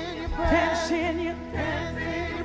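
Gospel worship song: several singers singing together with vibrato over a live band, with a steady low bass and a couple of drum beats.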